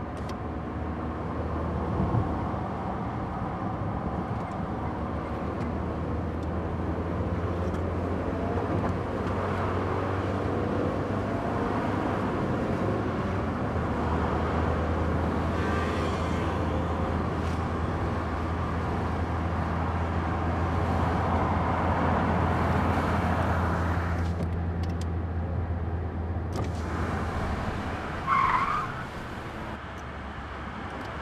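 Car driving along a road at a steady pace: a low engine drone under tyre and road noise, with a brief squeal near the end.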